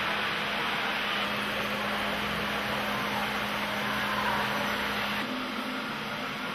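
Steady hum and hiss of a model train exhibition hall, with a model freight train running along the layout track. The low rumble drops and the hum changes about five seconds in.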